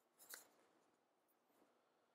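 Near silence with one faint, brief scratch of a pen writing on planner paper about a quarter second in, then a few fainter ticks.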